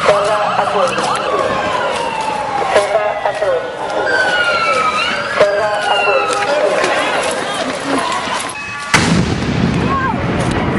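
Voices shouting over a wailing siren whose pitch glides up and down. A sharp knock comes just before the end, followed by rumbling handling noise.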